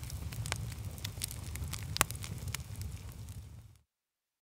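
Fire crackling: a low rumble with scattered sharp pops, one louder pop midway, fading and then cutting off just before the end.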